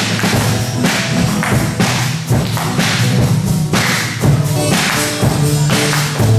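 Live band with drum kit, keyboard and guitars playing, with sharp drum hits standing out over the sustained chords.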